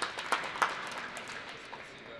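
Brief, light applause from a few people, a soft patter of scattered claps that fades over the two seconds, at the end of a speaker's remarks.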